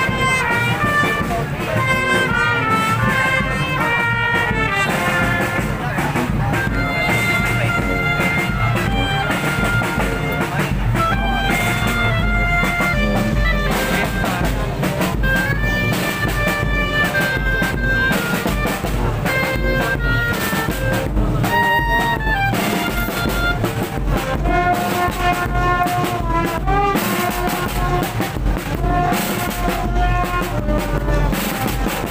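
Marching brass band playing a tune live in the street: sousaphone, trumpets and clarinets carrying a sustained melody over a steady drum beat.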